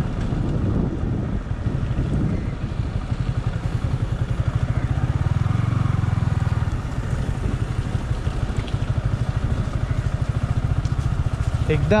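Yamaha R15 V3's single-cylinder engine running steadily, a fast even low beat as the motorcycle is ridden over a rough, broken road.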